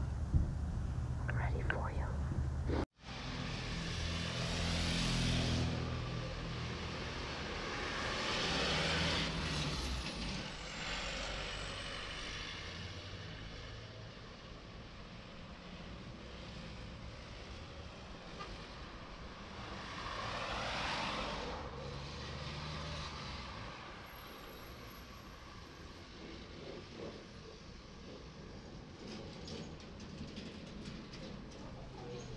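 Car driving at night, heard from inside the cabin: a steady road noise that swells and fades three times as vehicles pass. About three seconds in, the sound cuts out for an instant, like a tape edit, before the driving noise begins.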